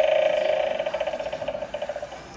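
Gemmy animated eyeball doorbell prop going off: a loud buzzing, rattling tone that starts suddenly. Its rattle grows slower and weaker, and it stops about two seconds in.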